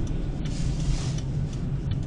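Low, steady road and engine rumble inside the cabin of a moving car, with a short rise of hiss about half a second in.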